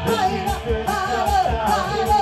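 Live rock band playing: a woman sings the lead vocal over electric guitar, bass guitar and a drum kit keeping a steady beat.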